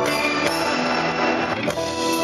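Live band music: held keyboard chords with the band behind them. The chords change about half a second in and again near the end.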